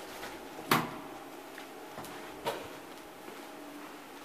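A sharp clunk about two thirds of a second in, the loudest sound, and a weaker one about two and a half seconds in, like a door or latch knock, over a faint steady hum.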